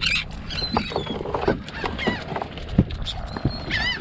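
Birds calling repeatedly with short, high chirps and squawks that bend in pitch, over the rustle and knocks of a wet net being handled in a metal tub.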